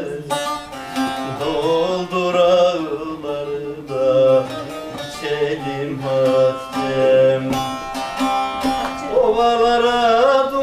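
Bağlama (long-necked Turkish saz) being plucked in a folk melody, with a man's voice singing drawn-out, ornamented notes over it.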